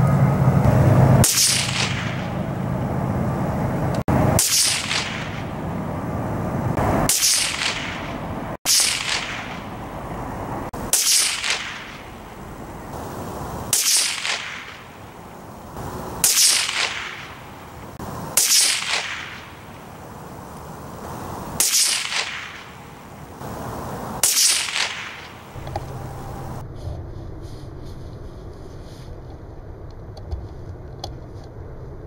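Ten shots from a .17 Mach 2 (17HM2) rimfire rifle, fired one at a time about two to three seconds apart. Each shot is a sharp crack with a short tail.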